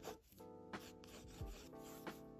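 Mechanical pencil strokes scratching on sketchbook paper, quietly, under soft background music with gentle chords and a light beat.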